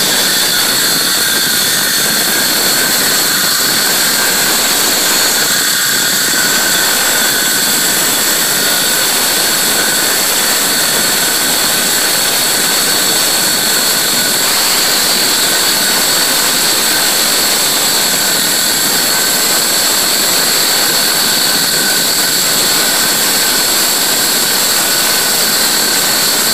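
Ryobi One+ 18-volt cordless circular saw cutting steadily along a door, a continuous high whine from motor and blade in the wood. The blade is a bit dull and the battery is getting weak.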